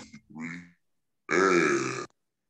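A man's voice at a studio microphone making short wordless vocal sounds: a brief one at the start, then after a pause a louder, longer one near the end.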